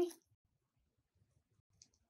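Scissors cutting paper: a single faint snip about two seconds in, with little else to hear around it.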